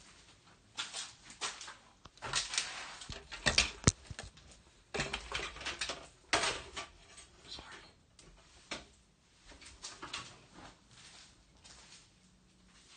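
Irregular scuffing and rustling noises, heaviest in the middle, with a sharp click about four seconds in.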